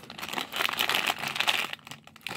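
Plastic mystery blind bag crinkling and crackling as it is opened by hand and the ornament is pulled out, dying away near the end.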